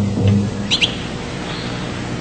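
Caged songbird chirping: a quick pair of high chirps about three-quarters of a second in. Under them, a low steady music drone fades out in the first half second.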